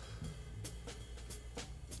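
Faint background music on a drum kit: cymbal strokes ticking about twice a second over a steady low bass.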